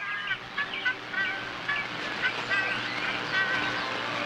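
Jungle ambience of many short, chirping and whistling bird calls, repeating over a steady hiss and a faint low hum.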